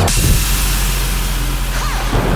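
Dubstep track in a break: the drums drop out suddenly, leaving a loud wash of noise over a held sub-bass, with a faint rising sweep near the end.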